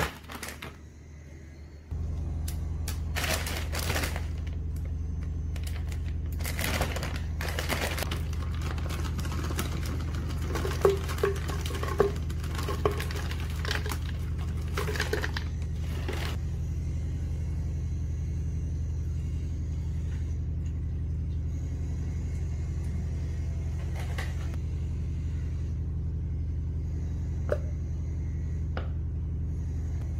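Frozen berries and ingredients being handled and dropped into a plastic blender cup: rustling packaging and small clicks and knocks, busiest in the first half, over a steady low hum that starts about two seconds in.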